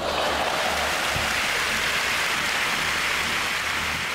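Steady applause from a large crowd, an even rush of clapping that starts abruptly and holds level.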